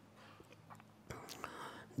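A pause in a man's speech: quiet room tone, with faint breathy sounds about halfway through.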